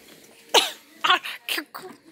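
A person's voice in four short, breathy bursts, roughly every half second.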